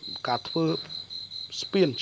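A steady, rapidly pulsing high-pitched trill like a cricket's runs throughout, under a voice speaking briefly near the start and again near the end.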